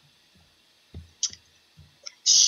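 Quiet room tone broken by a few faint soft thumps and one short, sharp click about a second in.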